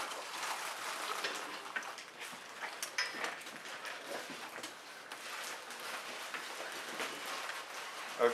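Scattered light clicks, knocks and rustling of studio lighting gear being handled and slid across the floor.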